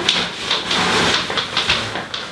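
Spray can hissing as competition tanning colour is sprayed onto skin, in long, mostly unbroken spurts.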